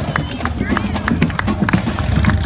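Hooves of several walking horses clip-clopping on pavement in short, irregular clicks, over the chatter of a crowd.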